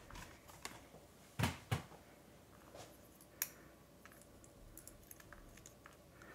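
A few light knocks and clicks as plastic die-cutting plates and metal dies are handled, taken apart and set down. There are two knocks close together about one and a half seconds in and a single sharper click about halfway through, with faint small ticks between.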